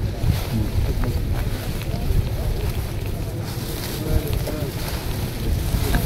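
Wind buffeting the microphone in an irregular low rumble, with indistinct voices of a crowd of people in the background.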